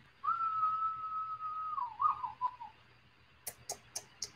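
A man whistling one long steady note that then drops and wavers downward, a whistle of astonishment. A few light clicks follow near the end.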